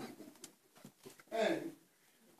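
One short vocal sound from a person, with a bending pitch, about one and a half seconds in, after a faint click.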